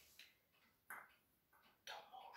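Near silence broken by a few faint light clicks, the clearest about a second in and another near the end: decorated eggshell eggs being handled and set down on the table.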